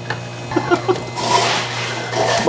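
A person laughing softly, a few short voiced chuckles followed by breathy laughter, over a steady low hum.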